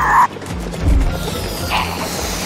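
Cartoon sound effects over light background music: a short buzzy burst at the start, a low thump about a second in, and another short burst near the end.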